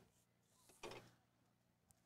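Near silence, with one faint, brief sound a little under a second in.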